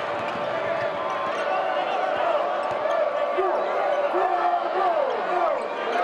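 A basketball being dribbled on a hardwood court, with voices and shouting from the arena crowd and players.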